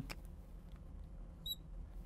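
A brief high squeak from a marker writing on a glass lightboard about one and a half seconds in, over a faint steady low hum.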